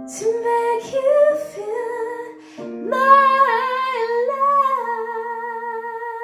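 A woman singing the closing phrase of a slow ballad into a handheld microphone over a sustained backing chord. From about three seconds in she holds one long final note with vibrato, and the accompaniment fades out near the end.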